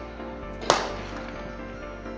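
Starter's pistol fired once, under a second in: a single sharp crack with a short ring-out that starts the race. Music plays steadily underneath.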